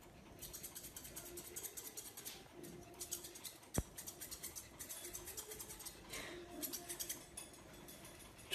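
Grooming scissors snipping in quick runs of faint clicks as they trim the fur around a dog's paw, with one sharper click a little before the middle.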